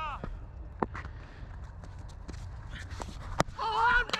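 A single sharp crack of a cricket bat striking the ball a little before the end, after a few lighter knocks, over a steady low rumble of wind on the helmet camera's microphone.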